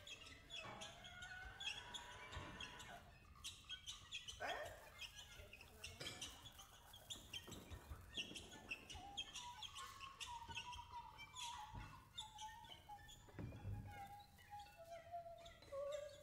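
Quiet free-improvised music from a small acoustic ensemble: a dense scatter of small high chirps, squeaks and clicks, with a thin, wavering held tone entering about nine seconds in and stepping down in pitch near the end.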